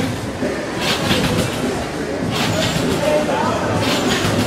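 Indistinct voices over steady background noise in a gym, with a couple of short noisy bursts, about a second in and again past two seconds.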